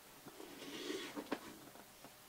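Cardboard box being handled: cardboard scraping against cardboard for under a second, then two light knocks in quick succession.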